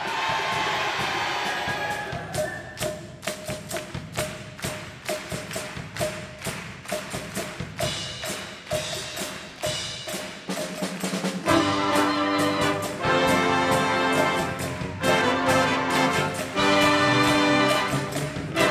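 A wind orchestra starts a pops number. It opens with a descending shimmer, then a percussion groove of drums and a repeating high, wood-block-like knock. About eleven seconds in, the full band of brass and woodwinds comes in with loud held chords.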